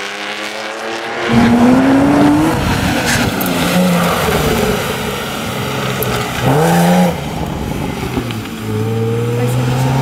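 A fainter engine drone gives way about a second in to a Porsche Boxster's flat-six engine revving hard on a tight cone course. Its pitch rises and falls repeatedly as the car accelerates and lifts between the cones.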